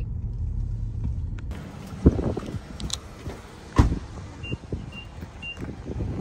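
A car's low engine hum, heard from inside the cabin, drops away about a second and a half in. Two loud car-door thuds follow about two seconds apart, then three short, evenly spaced high beeps.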